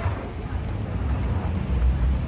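Steady low rumble of airport terminal background noise, with faint clicks from people on the move.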